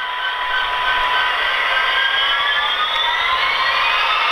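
Soundtraxx Tsunami 1 sound decoder in an HO-scale Athearn Genesis SD70 playing its diesel locomotive engine sound through the model's small onboard speaker, the engine note rising in pitch from about halfway through as throttle is applied and the model starts to move.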